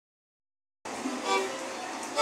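Violin playing a melody over a small strummed guitar of the cuatro type. The audio starts suddenly a little under a second in, after silence.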